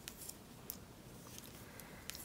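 Faint, scattered clicks of knitting needles touching as purl stitches are worked.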